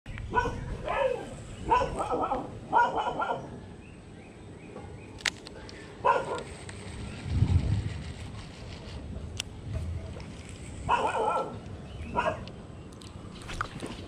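A dog barking: a quick run of barks at the start, a single bark about six seconds in, and two more near the end. A low rumble swells about seven seconds in.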